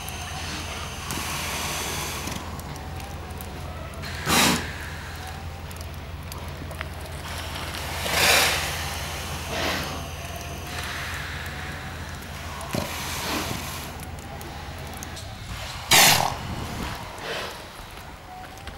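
Seals lying in a shed giving a few short, loud snorting breaths a few seconds apart, the loudest near the end, over a steady low rumble.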